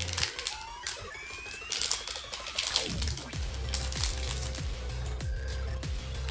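Foil booster-pack wrapper being torn open and crinkled, then trading cards being slid and flicked through, a run of short rustles and clicks. Background electronic music with a steady bass beat plays underneath.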